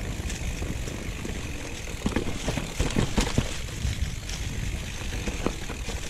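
Mountain bike riding down a leaf-covered trail: tyres rolling and crunching over dry leaves and stones, with a steady low rumble of wind on the microphone. Knocks and rattles from the bike over bumps come through, loudest in a cluster from about two to three and a half seconds in.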